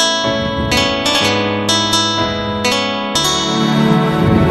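Acoustic guitar picking the notes of a slow ballad's instrumental intro, about two plucked notes a second, each ringing on, over a held low bass note.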